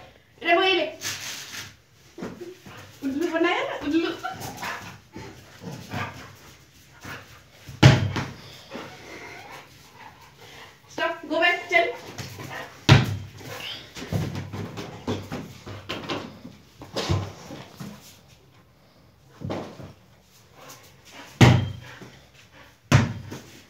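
A large dog playing rough with a ball on a hard floor: a few short whines and barks, and four dull thumps spread through the play.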